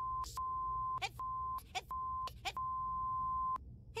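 Censor bleep: a steady, single-pitched beep sounding over a cartoon boy's shouted swearing. It is cut into several stretches by brief snatches of his angry voice, and the last and longest stretch, about a second, stops shortly before the end.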